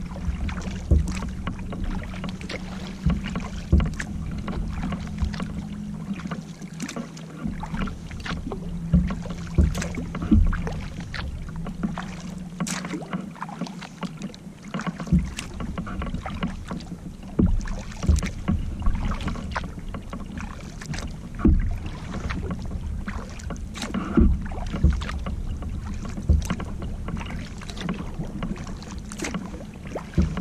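Kayak paddle strokes from a double-bladed paddle: the blades dip and pull through the water in a regular rhythm, with splashes and drips from the raised blade. A steady low hum sits under the first half and fades out about halfway.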